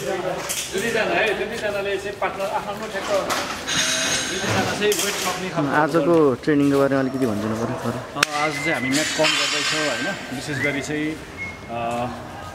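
A man speaking. The recogniser wrote down no words here, so the speech is likely in a language it did not catch.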